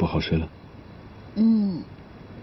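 Dialogue: the end of a man's short spoken line, then about a second and a half in a single short hummed voice sound.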